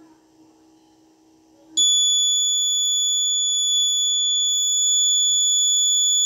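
Alarm buzzer on an Arduino accident-detection circuit sounding one loud, steady high-pitched tone that comes on about two seconds in and holds: the accident alert, set off by the accelerometer detecting a back-side crash, which runs until the reset button is pressed.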